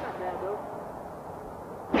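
Low steady background noise, then a sudden loud blast-like burst right at the end as the prop laser gun fires.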